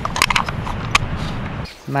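Handling noise on a camera's microphone: a few sharp clicks and knocks over a rustling hiss in the first second, then a man's voice starts near the end.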